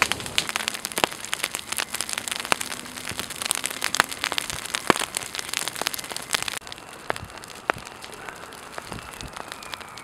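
Wildland fire crackling as it burns palmetto fronds and dry litter, with many sharp pops and snaps over a steady hiss. About two-thirds of the way through, the sound drops to a quieter hiss with only a few pops, from a low flame front in dry grass.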